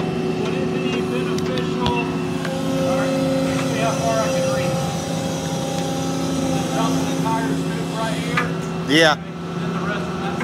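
Volvo excavator's diesel engine running steadily close by, a constant hum under the whole stretch.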